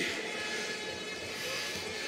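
Steady background noise of an open-air gathering, picked up by the podium microphones during a pause in the speech, with a faint even hum and no distinct events.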